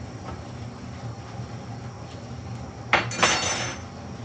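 A sharp knock about three seconds in, then a brief ringing clatter of dishes clinking together.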